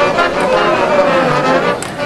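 High school marching band playing: the brass section holds sustained chords with percussion underneath, and a sharp percussion stroke lands near the end.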